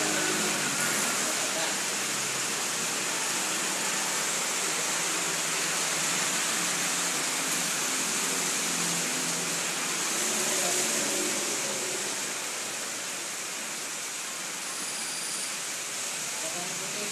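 A steady hiss of background noise with faint, indistinct voices underneath, the voices a little clearer near the start and again about ten seconds in.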